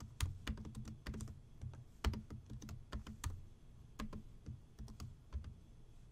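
Typing on a computer keyboard: faint, irregular keystrokes, a few per second.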